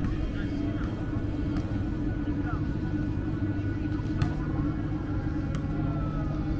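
Outdoor street ambience of a pedestrian square: a steady low hum with indistinct voices of passers-by and a single sharp click about four seconds in.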